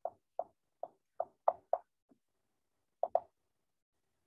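Key taps from typing on a touchscreen's on-screen keyboard: about eight short, soft taps in quick, uneven succession, with a pause of about a second before a final quick pair.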